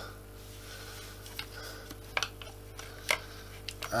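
Plastic wiring cover being pulled off the yoke of a Dyson DC25 vacuum cleaner: a few sharp clicks of plastic parts working loose, over a steady low hum.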